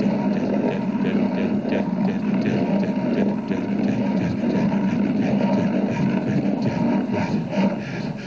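A continuous, dense wall of rough noise played live on tabletop electronics, heaviest in the low-middle range, with no beat or clear melody.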